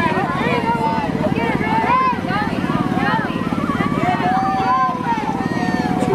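Small single-cylinder engines of a go-kart and a mini dirt bike running with a rapid, steady putter, under a crowd's overlapping chatter.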